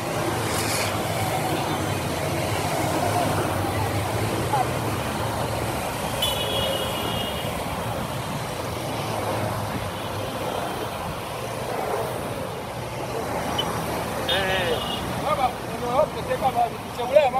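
Dense road traffic of many small motorcycles riding past, their engines running together in a steady rumble, with people's voices over it. A brief high tone sounds about six seconds in and another warbling one near the end.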